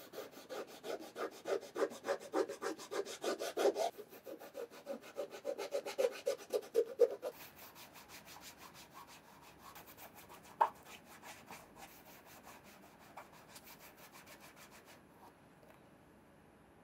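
A cotton ball held in tweezers rubbed quickly back and forth over a cut white sole piece, about four strokes a second, for the first seven seconds. Then softer, quieter rubbing of cotton against a sneaker's sole, with one sharp click about ten and a half seconds in.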